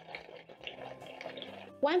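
Thin-sliced potatoes deep-frying in hot oil in a pot, giving a steady, fairly quiet sizzle.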